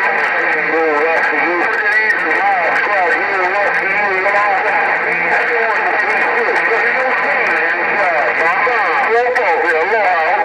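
Voices of other stations coming in over a President HR2510 ten-metre transceiver's speaker, thin and narrow-sounding, with steady static hiss and scattered crackles.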